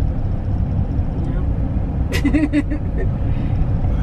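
Steady low rumble of a van's engine and road noise heard from inside the cab while driving, with a short laugh about halfway through.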